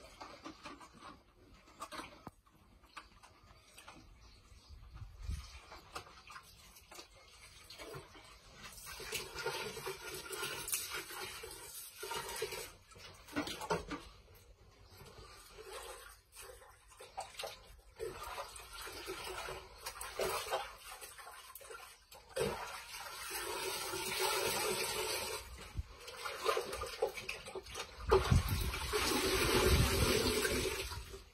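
Water sloshing and splashing in a plastic bucket as hands scrub a fish-tank pump under the water, uneven and busier in the second half. Near the end the pump is lifted out and water pours off it back into the bucket, the loudest part.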